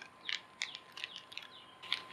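Plastic packet crinkling as a toilet kit is torn open and its contents are pulled out: a handful of short, faint crackles spread over the two seconds.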